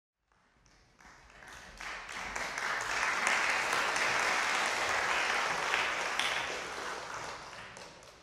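Audience applauding in a concert hall. It builds up over the first few seconds, holds, then dies away near the end.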